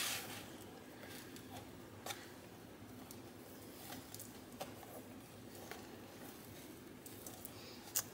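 Faint handling sounds of a ribbon being wrapped and tied around a small paper gift box: soft rustling with a few light ticks scattered through.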